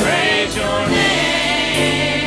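A small group of women singing a gospel praise song together in a church, holding notes with vibrato, over sustained keyboard accompaniment.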